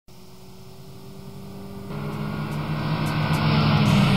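A car engine running, growing steadily louder over the whole stretch as the car approaches, with rising road noise from about halfway.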